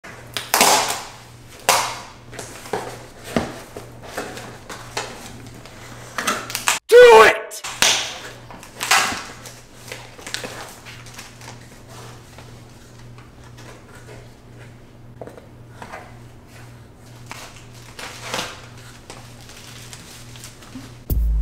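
Cardboard box and packaging being handled: scattered rustles and light knocks, with one loud, brief voice-like sound that bends in pitch about seven seconds in. A faint steady hum sits underneath.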